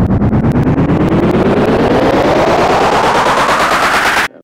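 Build-up effect in a rap track: a very rapid machine-gun-like stutter under a tone that sweeps steadily upward in pitch.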